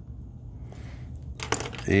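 A black pen writing faintly on paper, then a few sharp clicks about one and a half seconds in as the pen is put down.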